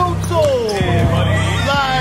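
Rap song with a deep, steady bass line and a kick drum, under a rapped vocal repeating a short phrase that slides downward in pitch.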